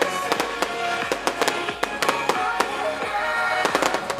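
Aerial fireworks bursting in a string of sharp bangs and crackles, thickest near the end, over music playing.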